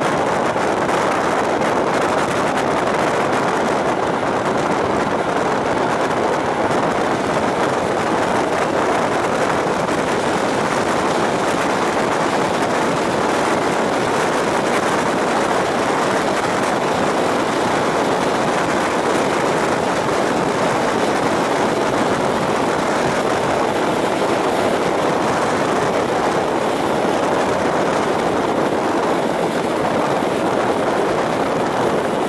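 EN57 electric multiple unit running at speed: a loud, steady rush of air and wheel-on-rail rolling noise.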